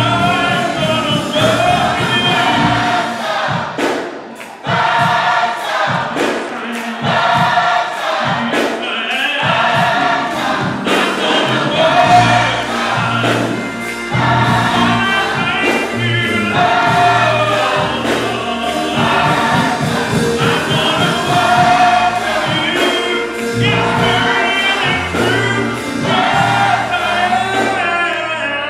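Gospel choir singing with a live band of drums and keyboard, the drums striking steadily under the voices.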